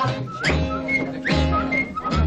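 A whistled tune of short notes, twice swooping up into a high note, over a steady bass accompaniment.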